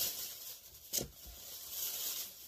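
Faint rustling of objects being handled, with one short knock about halfway through.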